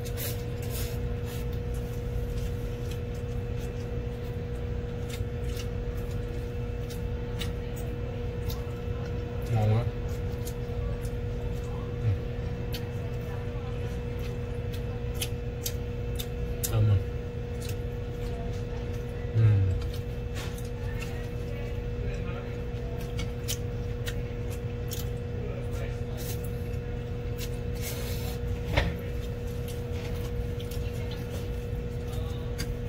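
A man eating noodles with chopsticks: scattered light clicks and mouth sounds, with a few short low vocal sounds, over a steady low hum.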